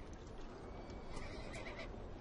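Horses: a whinny about a second in and scattered hoof clicks over a low, steady rumble.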